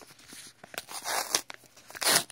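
Paper mail envelope being handled and torn open: scattered crinkles, then a noisy rip about a second in. The envelope is sealed with tape.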